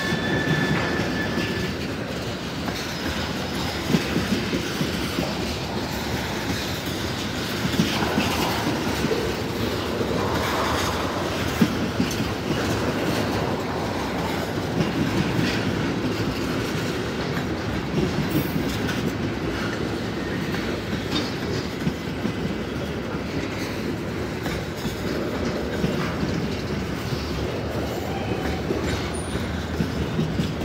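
Freight train cars rolling past: a steady rumble of steel wheels on the rails, broken by occasional sharp clacks.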